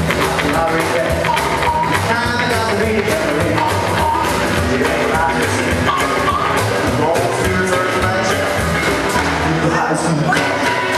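Rockabilly band playing live: electric guitar, upright bass, drums and amplified harmonica over a steady beat.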